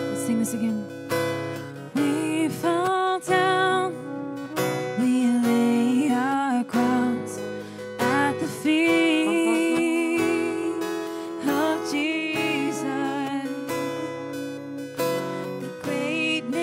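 Live worship song: acoustic guitar strumming, with a woman's voice singing the melody from about two seconds in.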